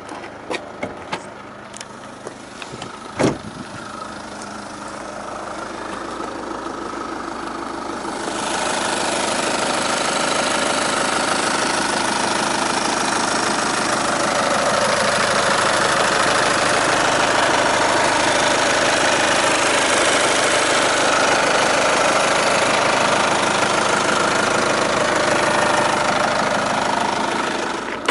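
Volkswagen Passat engine idling, a steady running noise that grows louder from about eight seconds in, when the engine bay is open and close by. Before that there are a few clicks and one sharp clack about three seconds in, where the bonnet release is pulled.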